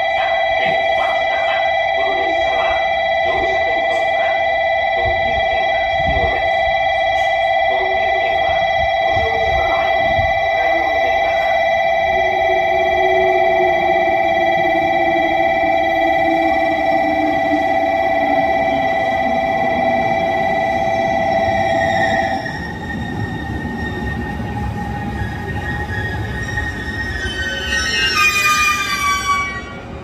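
A platform's steady two-tone electronic warning for an approaching train sounds and stops about 22 seconds in. Under it, a JR Kyushu 787 series electric train comes in with a falling hum as it slows. Near the end its brakes squeal in quick falling glides as it draws to a stop.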